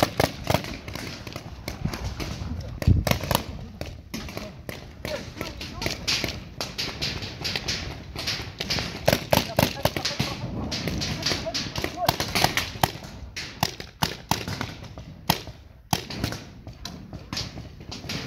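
Paintball markers firing: irregular sharp pops, some in quick runs.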